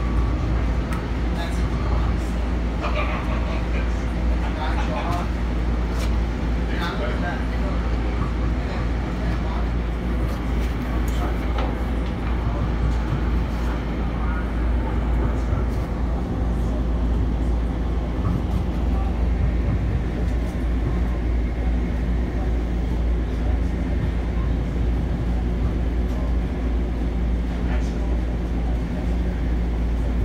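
Steady low rumble heard inside a moving Long Island Rail Road passenger car as it runs along the track, with faint voices in the first few seconds.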